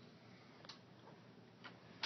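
Near silence: room tone with two faint, short clicks about a second apart.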